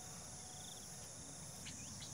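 Faint, steady high-pitched insect chirring, with a few faint short chirps near the end.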